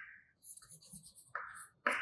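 Chalk writing on a chalkboard: a few short, faint scratching strokes as words are written.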